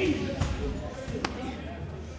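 Strikes landing on leather Thai pads: a heavy kick thuds into a pad right at the start, followed by two sharper smacks, one about half a second in and one a little after a second.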